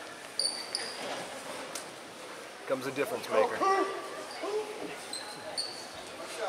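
A basketball bouncing on a gym's hardwood floor, with voices calling out midway. Short high squeaks come in pairs near the start and again near the end.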